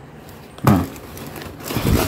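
Cardboard box and plastic mailer wrapping rustling and tearing as hands work a motorcycle magneto rotor out of its packaging. A short, louder knock or grunt comes about two-thirds of a second in, and the handling noise builds near the end.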